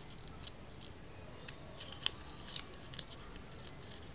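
Sheet of origami paper being folded and creased by hand: irregular crisp crinkles and rustles, the sharpest clicks coming in the second half.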